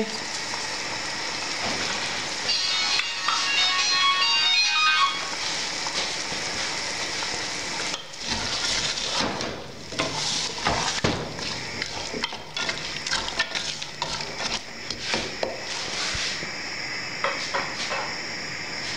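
Diced potatoes, peas, carrots and tomatoes sizzling in oil in a pot. From about eight seconds in, a wooden spoon stirs them, with irregular scrapes and knocks against the pot.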